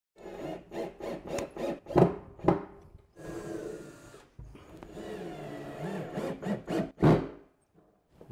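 Cordless drill boring pilot holes into a particleboard cabinet side and driving screws through a metal mounting bracket. It runs in several short bursts during the first three seconds, then in two longer steady runs that end about a second before the close.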